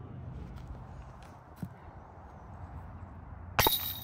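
Faint, steady outdoor background noise with a single light click about a second and a half in, then a sudden louder sound shortly before the end.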